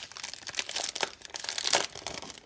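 A clear plastic packaging bag crackling in the hands as it is handled and opened: irregular, dense crinkling, loudest near the end.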